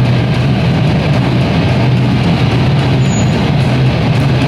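Heavy metal band playing loud through a PA: a low, droning distorted guitar and bass riff under a dense wash of noise, with no break in it.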